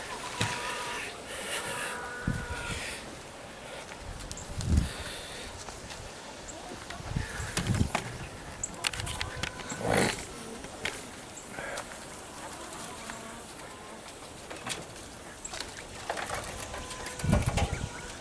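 Caged quail chirping and calling, with scattered thumps and knocks through the stretch.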